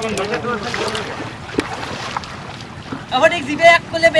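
Voices calling out, loudest about three seconds in, over water sloshing and splashing as netted fish thrash in a shallow tub.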